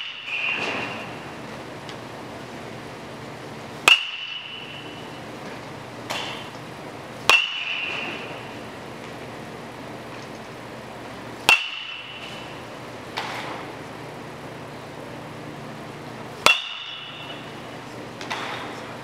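A metal baseball bat hitting pitched balls four times, a few seconds apart, each hit a sharp crack with a short high ring. Fainter knocks come between the hits.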